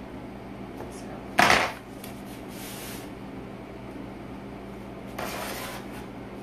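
Handling noises from cake-carving tools on a wooden cake board. There is a sharp knock about a second and a half in, then short scraping sounds a second later and again near the end, over a steady low hum.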